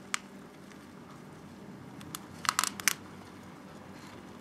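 Thin disposable plastic cup crackling in the hand that grips it: one sharp click near the start, then a quick run of clicks between two and three seconds in.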